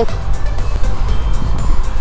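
Background music over a loud rushing noise, typical of wind on the camera microphone and tyre noise from a moving road bicycle. The rushing stops abruptly near the end.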